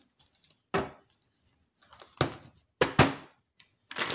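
A deck of tarot cards being handled: several short knocks and taps as the cards are taken out and gathered, the loudest two close together about three seconds in.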